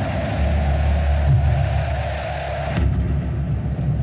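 Background score with a low, rumbling drone; its texture changes about three quarters of the way through.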